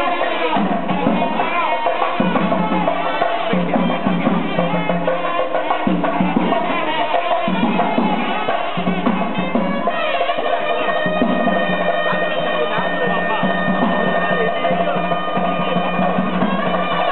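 Loud traditional ceremonial music: drums beating steadily together with a reedy wind instrument. The wind instrument holds long notes that stand out from about ten seconds in.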